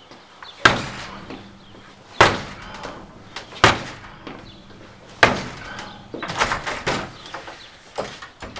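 A front door being kicked, held by a twisted door chain and a strike plate lock: four heavy bangs about a second and a half apart.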